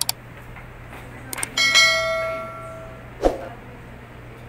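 Subscribe-button overlay sound effects: a mouse click, two quick clicks a little over a second in, then a single bell ding that rings out for about a second. A short thump follows near the end.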